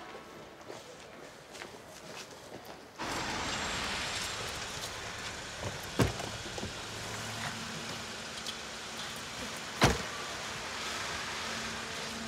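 A taxi's engine running steadily; it comes in suddenly about three seconds in, after a quiet start. There is a sharp click about six seconds in, and a car door shuts with a thud near ten seconds.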